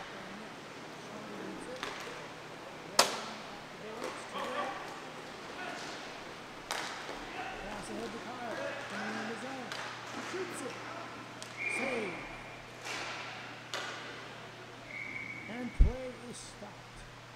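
Inline hockey play: sharp clacks of sticks and the puck striking, the loudest crack about three seconds in, with players' voices calling out. Near the end come two short referee whistle blasts, and a heavy thump at the very end.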